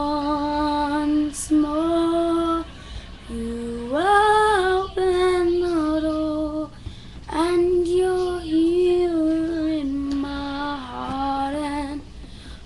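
A girl singing alone, holding long sustained notes in several phrases with short breaths between, stepping up in pitch about four seconds in.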